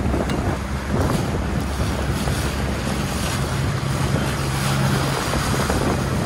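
Outboard motor of an inflatable coach boat running at a steady low hum while under way, with wind buffeting the microphone and water rushing past the hull.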